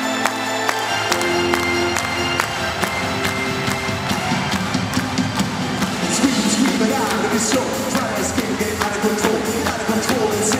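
Live band playing an upbeat pop-dance track with a steady drum beat; the deep bass comes in about a second in. Crowd cheering sits under the music.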